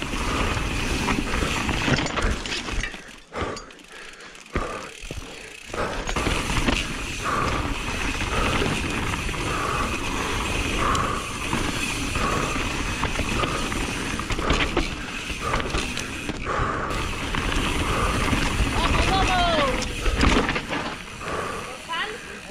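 Full-suspension enduro mountain bike (Radon Swoop 170) descending dry dirt singletrack at race speed, heard from a camera on the bike or rider: a steady rumble of tyres over loose dirt, chain and frame rattle with scattered knocks, and wind noise. The noise drops off for a few seconds about three seconds in, then returns.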